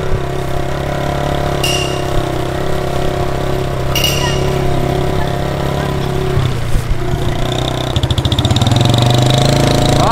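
Small motorcycle engine running at low speed with a steady note. About eight seconds in it gets louder, with a fast pulsing as the throttle opens.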